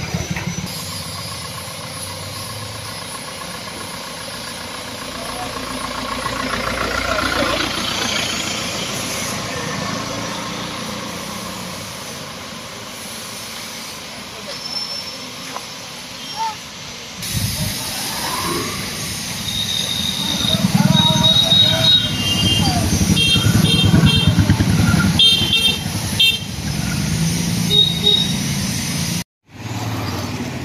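Street traffic: motorbike and scooter engines passing, with a run of short repeated horn beeps in the second half and voices in the background.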